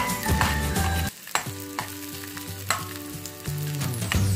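Chopped onion and garlic sizzling in oil in a frying pan, with a spatula scraping and clicking against the pan a few times. Background music plays over it for about the first second and comes back near the end.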